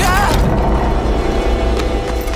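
Animated-film sound effects: a heavy, deep rumble under orchestral score, with a short wavering cry from a character in the first moment.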